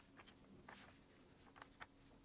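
Near silence with about four faint, short scratches of a paintbrush dabbing acrylic paint onto a small painting board.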